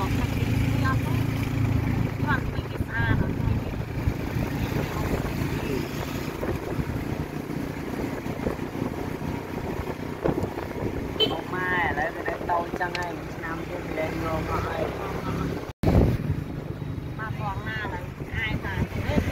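Engine and road noise of a moving tuk-tuk, with wind on the microphone. The low engine hum is steady for the first few seconds and then settles into a rumbling noise.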